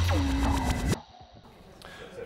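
Electronic transition sting with a deep bass tone under a higher tone that slides slightly down, cutting off abruptly about a second in and leaving quiet.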